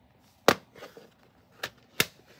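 Plastic CD jewel case being handled and opened: a sharp clack about half a second in, then a few lighter clicks.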